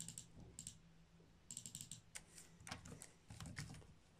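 Faint computer keyboard typing: a quick run of keystrokes about a second and a half in, then a few scattered clicks in short groups.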